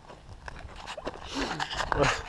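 Low wind rumble on the microphone, with a man's breathy 'ah' falling in pitch near the end.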